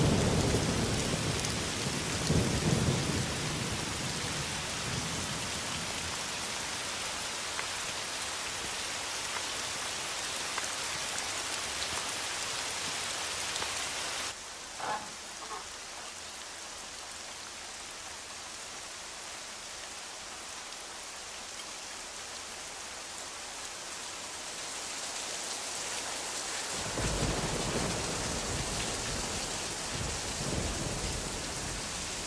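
Heavy rain falling steadily with thunder: a loud thunderclap at the start rumbles away over the first few seconds. About halfway the rain turns suddenly quieter and duller, and thunder rumbles again near the end.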